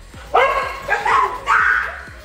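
A dog barking loudly three times in quick succession, excited yelps that bend in pitch.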